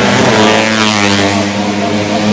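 Racing Yamaha Jupiter underbone motorcycle's four-stroke single-cylinder engine running at high revs as it passes close by on the straight.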